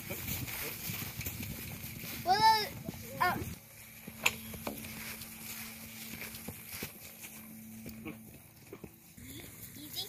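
Hoofbeats of a pony cantering on grass. About two and a half seconds in, and again a moment later, come two short, loud high-pitched calls that rise and then fall in pitch.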